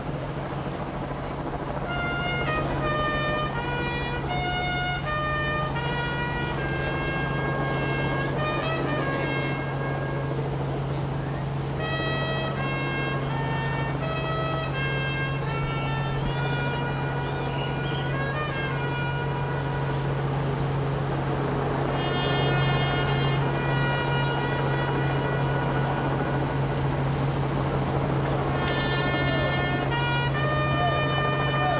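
Solo herald trumpet playing a slow funeral call in long, held notes, starting about two seconds in, with short pauses about two-thirds through and again near the end. A steady low hum runs underneath.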